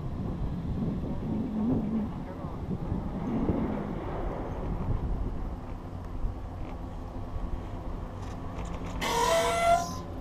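Chairlift riding up the line: a steady low rumble of the lift, with wind on the microphone. In the later seconds, faint clicks come as the chair passes a tower. About nine seconds in there is a short, louder burst holding several high pitched tones.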